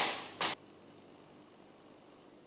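A brief hissing noise at the start and another about half a second in, then quiet room tone.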